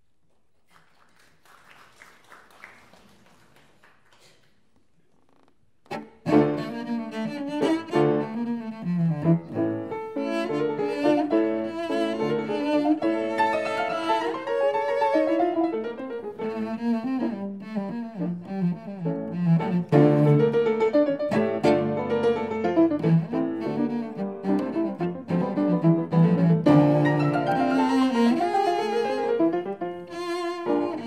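Cello and J. Becker grand piano playing classical chamber music together. The music enters suddenly about six seconds in, after a few seconds of near-quiet with faint stirring noises.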